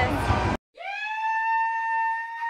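Talk over background music cuts off abruptly, and after a brief silence a single long horn tone swoops up and then holds steady: an added sound effect marking half time.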